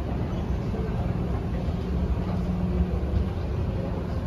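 Escalator running, a steady low rumble from its drive as it is ridden down.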